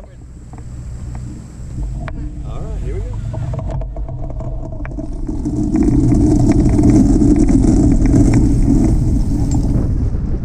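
A tow plane's engine runs ahead of a hang glider on its aerotow takeoff roll. Wind noise and knocking from the wheels rolling over grass grow louder about halfway through as the glider gathers speed.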